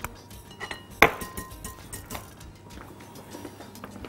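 A few light clinks of a wire whisk and utensils against a glass mixing bowl, the sharpest about a second in.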